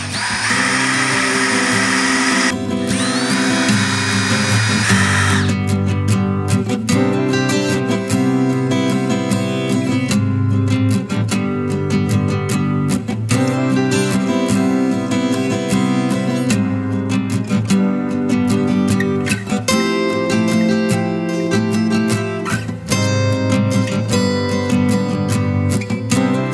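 Cordless drill boring pilot holes into a wooden trellis rail, running for about five seconds with a short break about two and a half seconds in. Acoustic guitar background music plays throughout.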